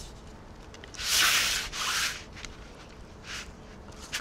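A hand rubbing olive oil over a metal baking sheet: two rubbing strokes about a second in, then a fainter short one near the end.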